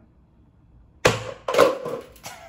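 A chair shifting on the floor, with two sudden loud scrapes starting about a second in.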